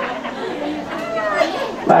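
Chatter of several voices talking at once in a seated audience, with no single clear speaker.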